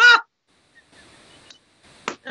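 A short, high-pitched burst of laughter at the very start, followed by a faint breathy wheeze of laughter about a second in, with quiet between.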